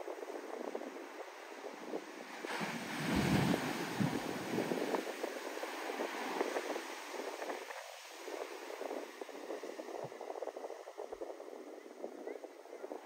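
Shorebreak surf: a wave breaks close to shore about two and a half seconds in, the loudest moment, then foaming whitewater keeps washing steadily up the beach.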